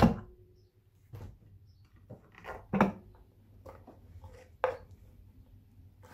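A few light knocks and clunks of plastic as the Fisher & Paykel SmartDrive motor's outer rotor is handled and lifted off its shaft. The loudest knock comes nearly three seconds in, with a sharper click a little before five seconds.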